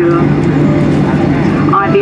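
Steady engine and cabin drone heard inside a Boeing 737-800 as it taxis after landing, its CFM56 engines running with a constant low hum. A cabin PA announcement ends at the start and resumes near the end.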